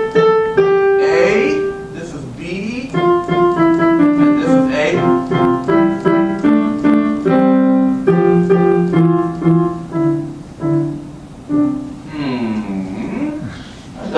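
Piano playing a familiar tune as a two-part canon: the left hand plays the right hand's melody a little later, lower down. The two parts clash and do not sound like a real canon. The playing stops near the end.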